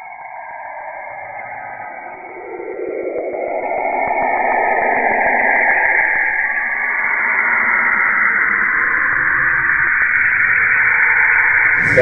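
A noisy intro sound effect that swells, rising in pitch and loudness over the first few seconds, then holds steady.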